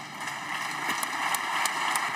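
Applause from many people in a large chamber, a dense clapping that builds over the first half second, with some sharper single claps standing out.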